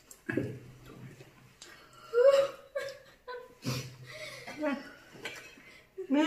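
People laughing and making short vocal sounds and exclamations, with no clear words.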